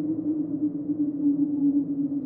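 Dark ambient soundtrack drone: one steady low tone held without change, with a dull hum beneath it.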